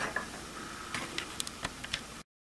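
Several light, irregularly spaced clicks and taps from paintbrushes and painting supplies being handled at the easel.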